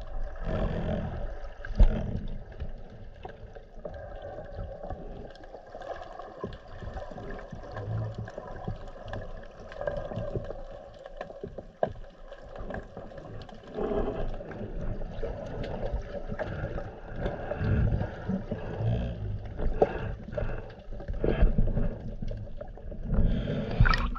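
Muffled underwater sound picked up by a camera in a waterproof housing: water rushing and sloshing with many small knocks and clicks as the diver swims over the reef. Near the end it swells louder as the camera breaks the surface, then drops away.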